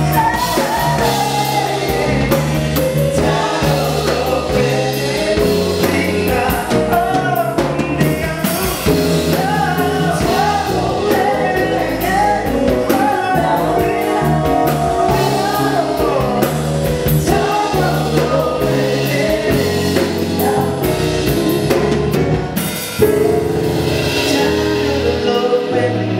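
Live soul band playing: a male lead singer over a Roland RD-700 stage piano, electric bass guitar and drum kit, with backing vocalists singing along.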